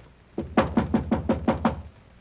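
Knocking on a door, a radio-drama sound effect: a quick run of about eight knocks lasting a little over a second, starting about half a second in.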